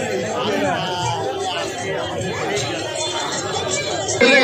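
Crowd chatter: many people talking at once in a dense crowd of fairgoers, a steady babble of overlapping voices with no one voice standing out.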